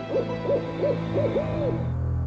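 An owl hooting: a quick run of about six short hoots, each rising and falling in pitch, over a low steady drone.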